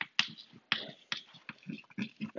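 Chalk writing on a chalkboard: a few sharp, unevenly spaced taps and short strokes as the chalk forms a word.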